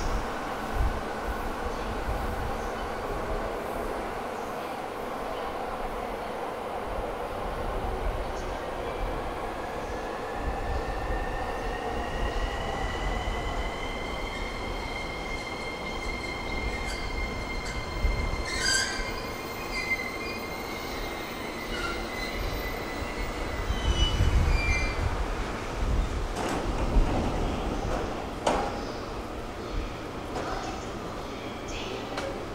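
E231 series electric commuter train pulling into a station platform and braking to a stop: a steady rumble of wheels on rail, with a high squealing tone that rises in pitch from about ten seconds in, holds, and breaks up near the stop. A sharp metallic clank about two-thirds through, and heavier rumble as the cars roll past near the end.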